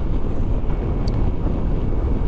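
Steady rush of wind over the microphone while riding a Ducati Multistrada V4S at road speed, with the low drone of its engine and tyres underneath.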